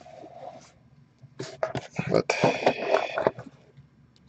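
A man's voice speaking briefly, with cardboard rubbing as the slip-off lid of a trading card box is lifted off.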